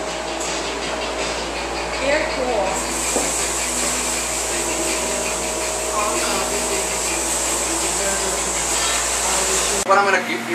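Steady hum and rushing hiss of air-handling machinery, growing louder and brighter about three seconds in, then cutting off suddenly just before the end.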